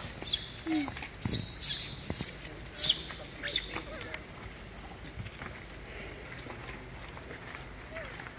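Animal chirps: a quick, uneven run of sharp, high-pitched chirps, each sweeping downward, over the first three and a half seconds, followed by a faint, thin, high steady trill lasting a couple of seconds.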